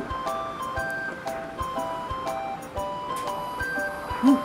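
Background music: a light, bouncy tune of short bright notes over soft percussion.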